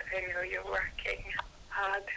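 A person speaking in a recorded telephone voice message, the voice thin and narrow-band as over a phone line.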